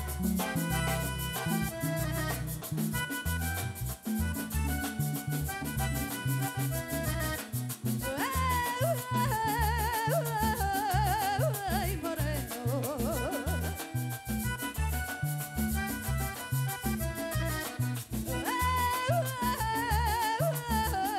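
A live vallenato band playing: button accordion over a driving bass and percussion. A woman's voice comes in singing about eight seconds in and again near the end.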